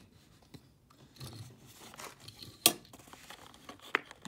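Plastic blister packaging and card being handled and moved on a tabletop, with a single sharp plastic click about two and a half seconds in, the loudest sound, and a smaller click near the end.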